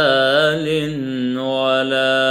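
A man singing an Arabic devotional muwashshah (inshad), drawing out long melismatic notes with a wavering, ornamented pitch over a steady low drone.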